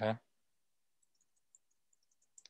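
A brief spoken "okay" at the start, then near silence on a call line, with a few faint, tiny high clicks.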